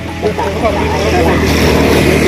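Several people talking over one another, with a steady low engine-like hum underneath that grows louder about half a second in.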